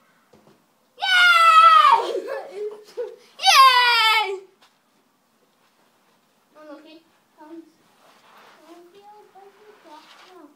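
A child yelling twice, loud and high-pitched, each yell falling in pitch: the first about a second in, the second at about three and a half seconds. Quieter child voices follow in the second half.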